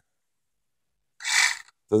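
Near silence, then a short breathy hiss a little over a second in: a person drawing breath before speaking.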